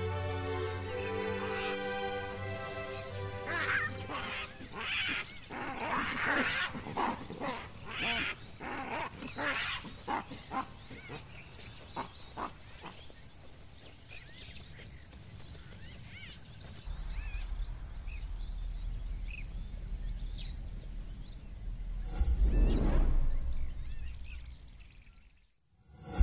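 Baboons giving a rapid run of short grunting calls, several a second, for about ten seconds, after a few seconds of soft music. Later a low rumble comes in and a whoosh sounds near the end.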